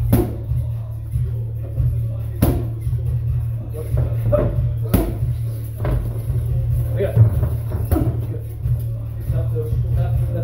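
Boxing gloves landing punches in sparring: sharp thuds at uneven intervals, about six or seven, over gym music with a heavy, steady bass line.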